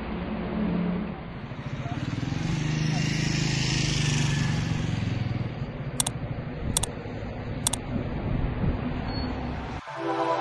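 Outdoor street sound with road traffic, one vehicle swelling louder and fading a few seconds in, and indistinct voices. Midway come three quick, sharp clicks, the mouse clicks of a subscribe-button animation.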